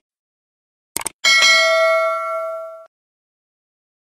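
Subscribe-button sound effect: a short mouse-style click about a second in, then a bright bell ding that rings for about a second and a half, fading, before cutting off sharply.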